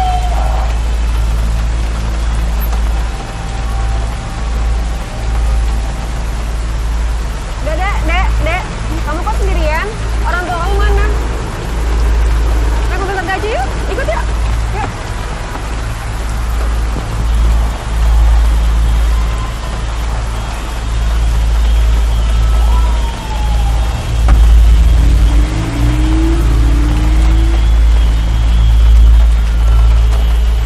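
Film soundtrack of a rain-swept street: a deep, continuous rumble under a steady hiss of rain, with several voices shouting about eight to fourteen seconds in.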